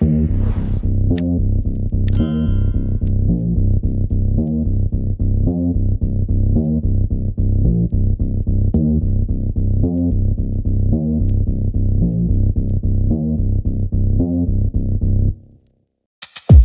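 Background music with a steady, bass-heavy beat that stops suddenly shortly before the end.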